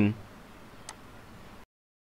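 Near silence: faint background hiss with a single faint click about a second in, then the sound cuts to dead digital silence.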